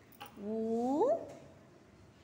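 A woman's voice drawing out the Tamil vowel 'u' (உ), held level and then sliding sharply up in pitch at its end, lasting under a second.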